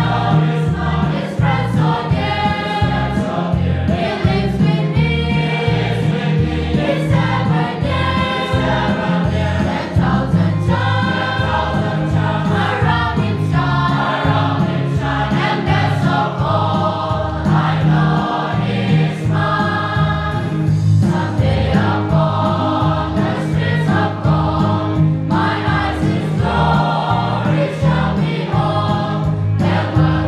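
Church congregation of men and women singing a hymn together, continuous throughout.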